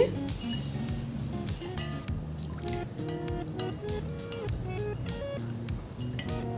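Background music with a simple melody, over a metal spoon clinking against a glass bowl and swishing through water as food colouring is stirred in.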